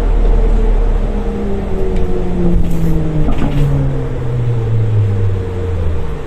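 Ikarus 280.94T trolleybus's electric traction drive whining down in pitch in steps as the vehicle slows, over a steady low rumble. Two short hisses come about halfway through.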